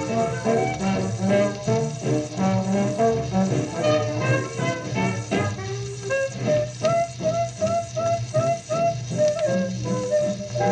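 Instrumental break of an old-time band song playing through a vintage Magnavox radio, with no singing. It has a steady beat, and in the second half a figure of short notes repeats quickly.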